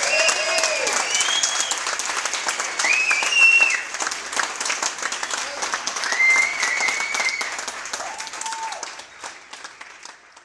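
Audience applauding and cheering at the end of a song, dense clapping with a few held cheers over it, dying away over the last couple of seconds.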